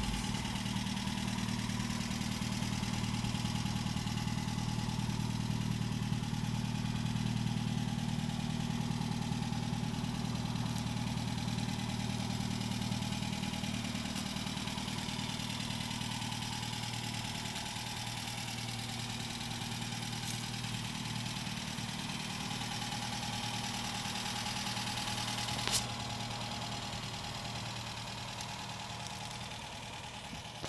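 1955 Nash Metropolitan's Austin-built four-cylinder engine idling steadily, slowly fading a little, with one sharp click about four seconds before the end.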